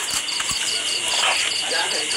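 Insects chirping: a short high chirp repeating evenly about four to five times a second over a steady high-pitched trill.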